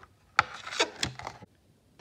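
Clear plastic blister tray clicking and crinkling as a trading-card code card is pried out of it: one sharp click, then about a second of crackly rubbing and handling.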